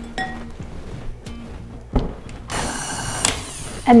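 Quiet background music, with a knock about two seconds in. A KitchenAid stand mixer then runs for under a second, a buzzing whir beating cream cheese.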